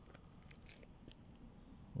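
Quiet background with a few faint, short clicks and ticks.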